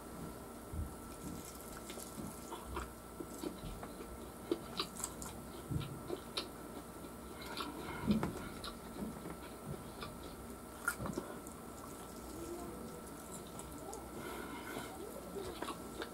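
A person eating fried chicken wings: quiet, wet chewing and biting with scattered small clicks and smacks of the mouth.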